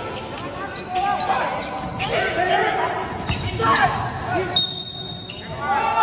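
Basketball game in a large gym: the ball bouncing on the hardwood court amid players' voices calling out, echoing in the hall.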